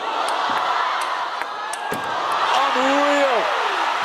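Table tennis ball struck back and forth in a fast rally, a string of sharp clicks from bats and table over steady crowd noise. About halfway through the clicks stop and a single long shout rises and falls as the point is won.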